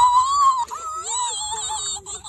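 A high-pitched squealing voice: one held squeal lasting about a second, then a lower, wavering sound.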